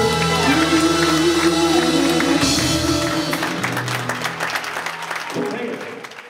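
A live blues band holding the final notes of a song, then audience applause coming in about halfway and fading out near the end.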